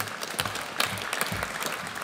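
Audience applause: many hands clapping at a steady level.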